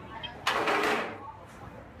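Voices in a restaurant, with a short, loud, breathy vocal noise about half a second in, followed by quieter room chatter.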